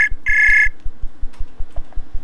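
Ringing tone of an outgoing call in a browser video-chat app, the call not yet answered: a double electronic beep of two steady high tones, the second beep ending under a second in.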